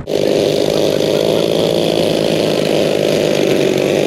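Engines of a large radio-controlled B-25 Mitchell model running in a steady, even buzzing drone as it taxis on grass.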